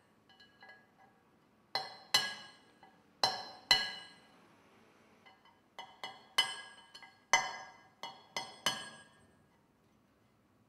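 Hammer tapping a metal chisel to chip fragments out of a sheet of glass in bouchardage engraving: about a dozen sharp, ringing taps in pairs and clusters, with short pauses between.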